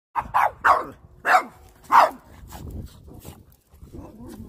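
A Boston terrier barking in quick, sharp barks, five of them in the first two seconds, at a push broom being pushed toward it.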